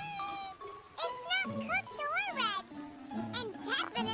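Cartoon soundtrack: light background music under high-pitched, wordless character vocalisations that slide up and down in pitch, with a long upward-sweeping squeal about two and a half seconds in.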